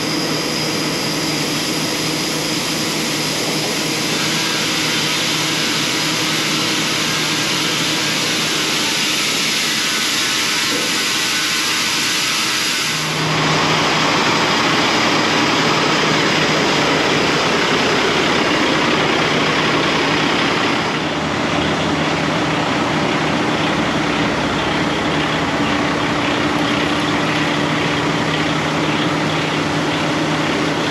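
Steady mechanical noise of a diesel semi truck running at a grain elevator dump pit while shelled corn pours from its hopper-bottom trailer through the grate, with a constant low hum and a high whine. The sound changes abruptly to a new steady level about halfway through and again about two-thirds through.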